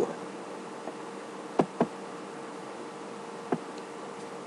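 A steady faint hum over light hiss, broken by three sharp clicks: two in quick succession about one and a half seconds in, and one more near the end.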